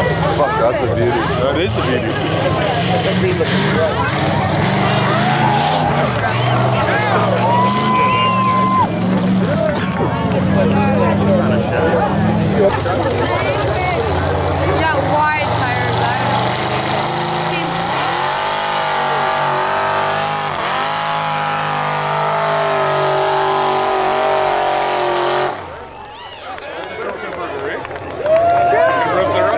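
Engines of lifted mud-bog trucks running hard through a mud pit, loud throughout, with the chatter of a crowd of spectators. In the later part an engine climbs steadily in pitch, then the sound drops off sharply shortly before the end.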